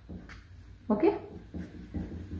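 Felt-tip permanent marker tapping a dotted line onto paper pattern sheet: a few faint, light taps, with one short spoken word about a second in.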